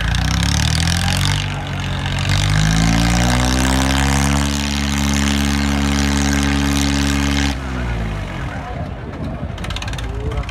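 Diesel tractor engine revved up to full throttle, its pitch climbing over the first few seconds and then held high and steady under heavy load as it strains in a tractor tug-of-war pull. The revs drop sharply about seven and a half seconds in.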